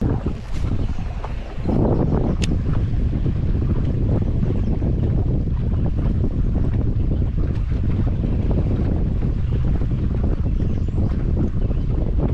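Wind buffeting the microphone, a loud, steady rumble from about two seconds in, over water slapping around a small fishing boat, with one short click early on.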